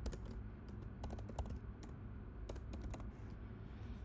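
Typing on a computer keyboard: a run of irregular, short key clicks, over a steady low background hum.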